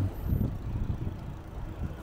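Low, uneven rumble of wind buffeting the microphone, with rolling noise, while riding along a paved street on a recumbent trike.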